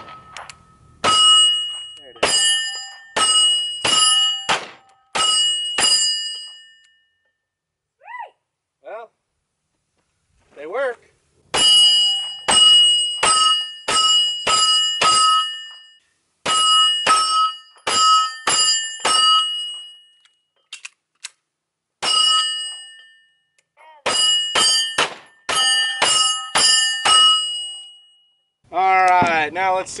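Canik TP9SFx 9mm pistol firing at AR500 steel plates in strings of several shots with short pauses between them. Most shots are followed by the clear, bell-like ring of a struck steel plate.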